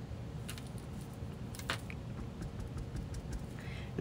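Stamping supplies handled on a craft mat: a clear acrylic stamp block and an ink pad give a few faint clicks and taps, with one sharper click about a second and a half in.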